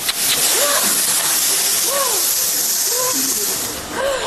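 A man blowing out one long, steady hiss of breath through pursed lips, with faint talking underneath.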